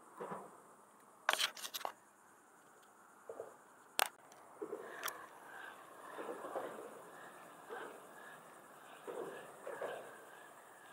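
Handling noise of hands working close to the camera and fishing rig: a quick cluster of sharp clicks about a second in, single sharp clicks around four and five seconds, and soft rustling in between.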